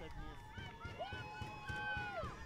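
Faint, distant voices of players shouting and cheering after a goal, with one long held cheer starting about a second in.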